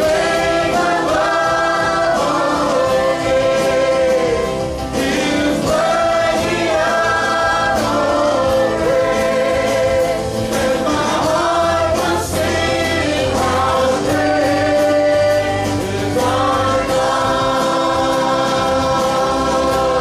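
Live church worship music: a band playing while singers and the congregation sing a praise song in sung phrases with long held notes.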